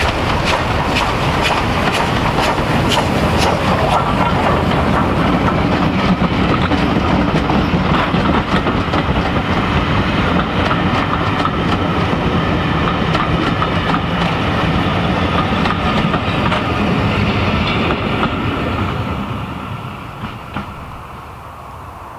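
SDJR 7F 2-8-0 steam locomotive No. 53808 passing close with its train, sharp regular beats from the engine in the first few seconds, then a steady rumble and clatter of coach wheels on the rails. The sound fades away near the end as the train goes by.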